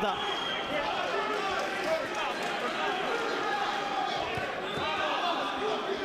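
Arena crowd noise from a boxing bout: many voices shouting and chattering at once. A few dull thuds, most likely boxing gloves landing, stand out, the loudest about two seconds in.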